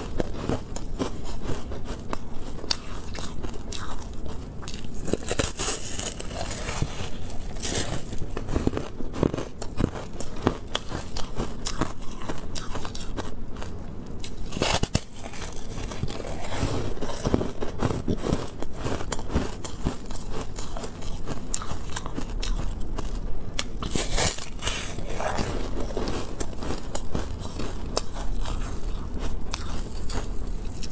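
Biting and chewing refrozen shaved ice, a dense, continuous run of crunches and crackles.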